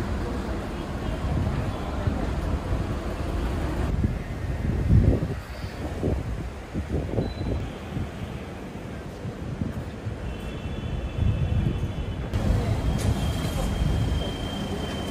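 Street ambience: traffic noise with wind buffeting the microphone, and faint high-pitched tones in the last few seconds.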